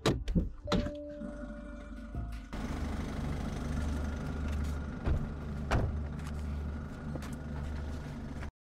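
Car door latch clicking and the door thunking open in the first second, then a steady low outdoor rumble with two heavy thuds of a car door being shut about five to six seconds in.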